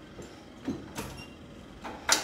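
A few faint knocks and rustles as someone climbs onto a tractor seat.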